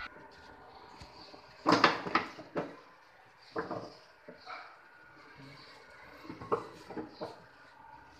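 Knocks and clatters of carved wooden mandir panels being handled and fitted together during assembly. A cluster of loud knocks comes about two seconds in, followed by scattered lighter knocks.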